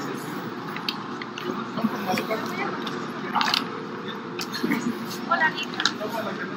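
Indistinct voices murmuring in a busy office lobby, with scattered sharp clicks and knocks.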